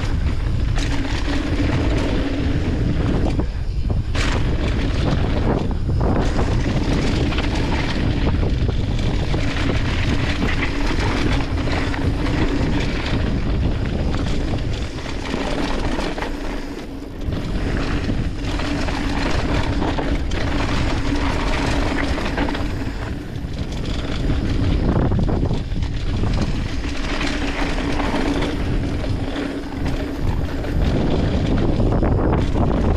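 YT mountain bike running fast down a dirt trail: tyres rolling over dirt and wind buffeting the microphone, with a steady hum underneath. A few sharp knocks from bumps come early, and the noise dips briefly twice in the second half.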